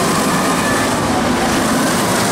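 Intamin accelerator roller coaster train running along its steel track, a loud steady rumble of wheels on the track that goes on without a break.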